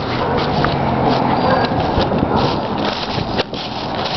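Footsteps on leaf-littered ground, mixed with handheld camera handling noise. An irregular run of soft steps and rustles sits over a steady noisy background.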